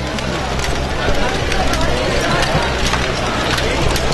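Irregular small clicks and clatter of plastic balls rolling and dropping through LEGO Great Ball Contraption modules, over a steady low hum and background crowd chatter.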